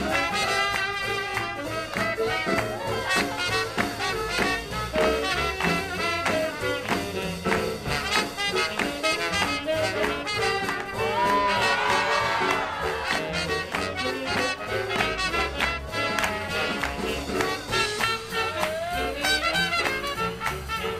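Live swing big band playing, its brass section of trumpets and trombones over a steady beat.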